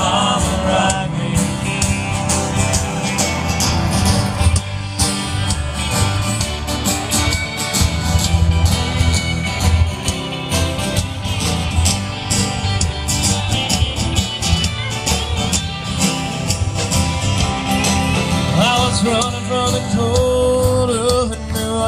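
Live country band playing an instrumental break between verses: electric and acoustic guitars over a drum kit with a steady beat, heard from the audience.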